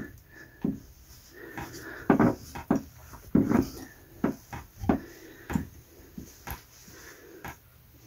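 A microfiber cloth rubbing and scuffing inside the open body of a chrome bath mixer tap, with irregular short knocks from handling as the tap body is wiped out.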